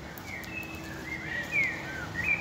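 Birds chirping: several short calls that slide up and down in pitch, over a steady street background hiss.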